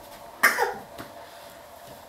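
A single short, loud cough about half a second in, its tail dropping in pitch, over a faint steady hum.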